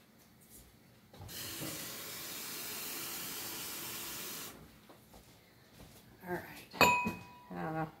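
Kitchen tap running steadily for about three seconds, filling a glass mason jar with water. Near the end comes a single sharp glass clink that rings briefly.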